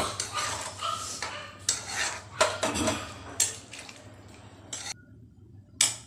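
A metal spoon scraping and clinking against a metal kadhai while stirring a watery curry: a string of irregular scrapes and knocks, then a short lull about five seconds in, ended by one sharp clink.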